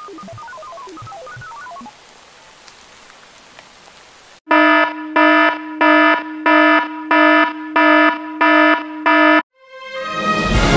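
A faint run of quick, short, high notes in the first two seconds, then faint hiss. About four seconds in, a loud electronic alert tone sounds eight times in a steady repeating pattern, about one and a half times a second, and cuts off just before the end.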